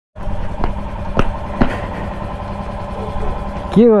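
Motorcycle engine idling steadily with a low rumble, with three sharp clicks in the first two seconds. It stops abruptly near the end, where a man's voice begins.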